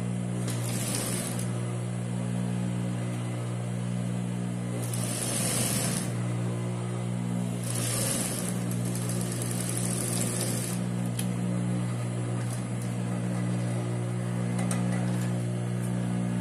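Mitsubishi industrial sewing machine: its motor hums steadily while several short runs of stitching, each a second or two long, close the seam of a fabric mask.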